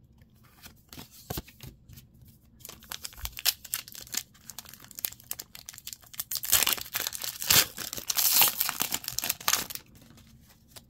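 A foil Pokémon booster pack wrapper crinkling and being torn open by hand. Scattered crackles come first, then a dense, loud stretch of crinkling and tearing through the second half that stops just before the end.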